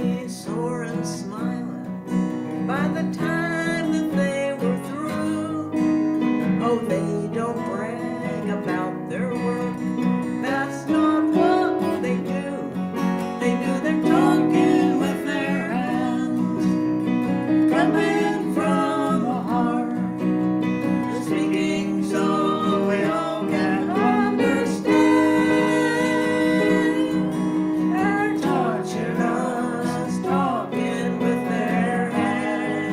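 A woman and a man singing a song together, accompanied by an acoustic guitar.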